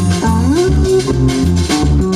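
A norteño band playing an instrumental passage: a plucked guitar, likely the bajo sexto, with sliding notes over a bass line and a steady beat.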